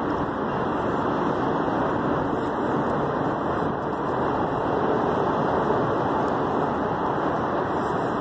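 Freight train of tank cars rolling past: a steady, even noise of wheels on rails.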